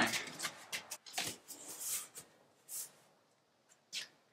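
Sheets of cardboard rustling, sliding and tapping as they are pushed into place in a window sill opening: a run of short scrapes and knocks, then quieter, with one short scrape near the end.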